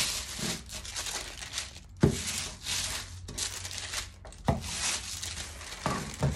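Baking paper and metallised crisp-packet plastic rustling and crinkling as a clothes iron is pushed over them to heat-fuse the packets into one sheet, with two sharp knocks about two seconds and four and a half seconds in.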